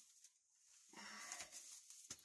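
Near silence, with faint rough noise starting about halfway through.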